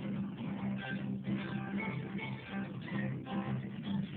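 Guitar strummed in a steady rhythm, playing the chords of a country song.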